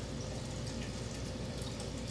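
Steady background room noise with a faint constant hum, and no distinct event.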